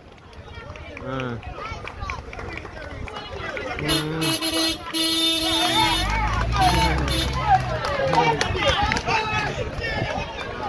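Crowd of spectators shouting and cheering a runner toward the finish line, many voices overlapping. About four seconds in, a horn sounds two long, steady blasts.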